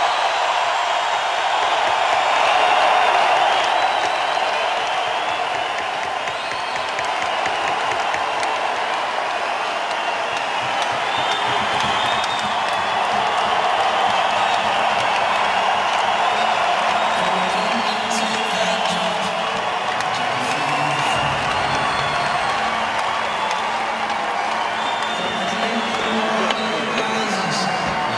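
Hockey arena crowd giving a long standing ovation: steady, loud cheering and applause, with high shouts rising above it now and then.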